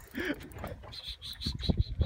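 Spinning reel's drag clicking in a quick, even run of ticks, about seven a second, starting about a second in, as a big stingray pulls line off against the bent rod. Wind buffets the microphone underneath.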